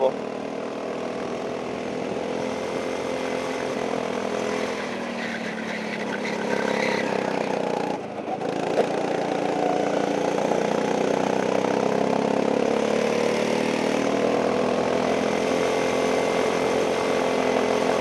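Go-kart's small engine running at speed on a lap, its pitch wavering with the throttle. The engine note drops briefly about eight seconds in, then picks up again.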